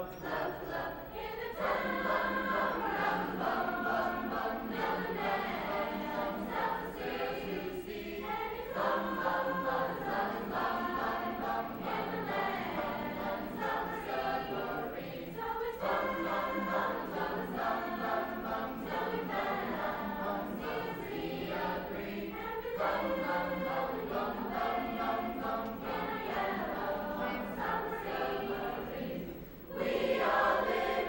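Mixed high school choir singing a choral piece in parts, in phrases several seconds long with brief breaks between them.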